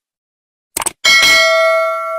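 Subscribe-button sound effect: a quick mouse click, then a bright notification-bell ding that rings on and fades over about a second and a half.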